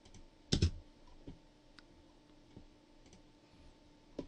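Computer keyboard and mouse clicks: one louder key press with a low thud about half a second in, then a few faint clicks, over a faint steady electrical hum.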